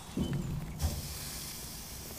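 Meat sizzling on an open smoker grill, a steady hiss that turns louder and brighter just under a second in. A brief low sound comes near the start.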